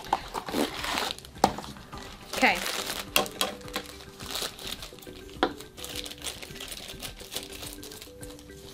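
A foil blind bag crinkling and rustling as it is pulled out of a small cardboard box and handled, with irregular sharp crackles throughout; scissors start cutting the bag near the end.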